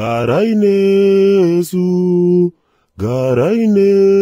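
A man chanting in a sung voice. Each phrase slides up and then holds a long steady note, with a short break before a second held note. After a brief pause the phrase starts again about three seconds in.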